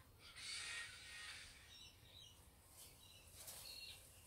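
Faint outdoor quiet: a brief soft rustle of hedge leaves near the start, then small birds chirping a few times in the distance.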